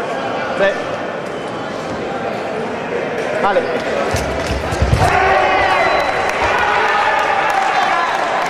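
Sabre fencers' fast footwork on the piste during an attack: a cluster of heavy stamps about four seconds in, then loud shouting held through the last few seconds as the touch is made.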